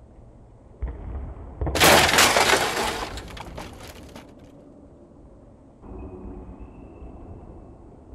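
Glass-smashing sound effect: a small knock about a second in, then a loud shatter with tinkling shards that dies away over about two seconds.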